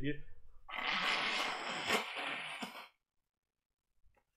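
A person blowing their nose into a tissue: one noisy blow lasting about two seconds, from someone with a head cold.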